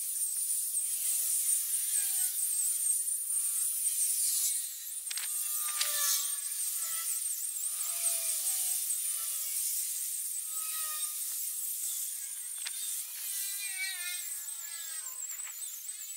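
OSUKA OCGT407 cordless brushless grass trimmer with a toothed circular blade, running while cutting grass: a high, wavering motor whine over a hiss, dipping briefly about four and a half seconds in.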